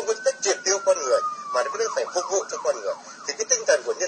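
Emergency-vehicle siren in the background: one long wail that falls slowly over the first two seconds, then switches to a quick yelp, rising and falling several times a second for about a second, with voices underneath.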